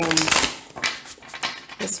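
A deck of tarot cards being shuffled by hand: a rapid run of crisp flicks and clicks.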